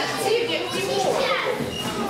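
Overlapping children's voices shouting and talking at once, echoing in a large hall.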